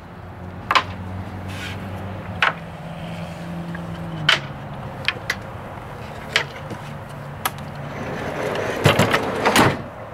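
Plywood panels of a small camping trailer's slide-out storage tray being pushed and slid into place, with scattered light knocks and clicks. Near the end come two louder knocks as the trailer's rear storage hatch door is shut.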